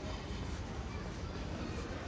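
Pedestrian street ambience: a steady low rumble with indistinct chatter of passers-by.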